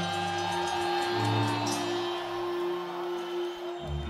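Heavy metal band playing a slow, quiet intro live in an arena: held electric guitar notes, some of them bending slowly in pitch, over sustained bass notes. The bass drops out shortly before the end.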